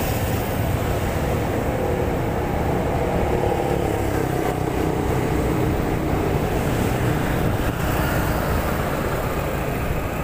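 Riding on a motorized two-wheeler: steady engine and road noise, with an engine note that rises and eases off midway and a low rumble of wind on the microphone, amid passing traffic.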